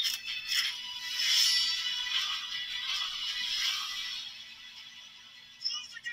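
Movie trailer soundtrack music, thin and without bass, swelling about a second in and fading toward the end.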